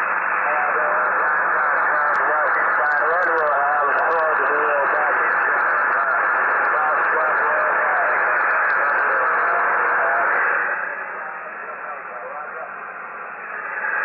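A weak, distant station's voice comes through an HF radio transceiver's speaker, buried in loud, narrow-band hiss and static. About ten and a half seconds in, the noise and the voice drop in level.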